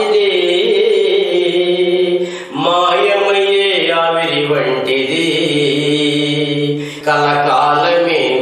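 A man singing a Telugu Christian devotional song in long, held phrases over a steady accompanying drone, with short breaths between phrases about two and a half seconds in and near the end.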